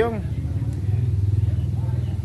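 A motor vehicle's engine running with a steady low hum, a little stronger in the middle.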